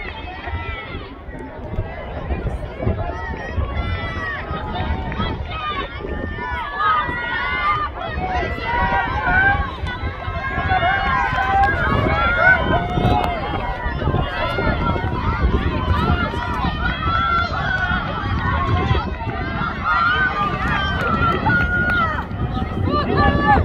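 Several people's voices talking and calling out at once, overlapping so that no words stand out, over a steady low rumble.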